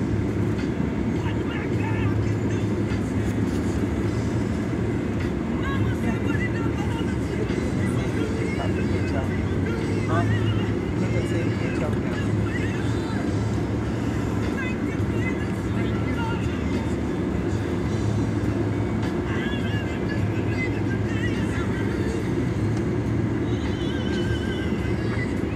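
Steady low road-and-engine rumble heard inside a moving car's cabin, with music and voices faint underneath. A person laughs about twelve seconds in.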